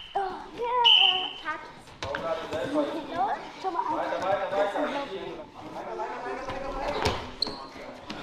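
Voices echoing in a large gym hall, with two brief high-pitched squeaks near the start and a sharp thump near the end.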